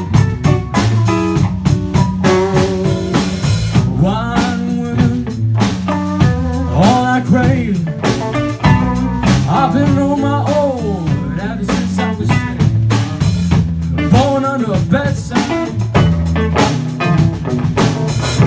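Live blues band playing an instrumental passage: an electric guitar plays lead lines with repeated string bends over bass guitar and a drum kit.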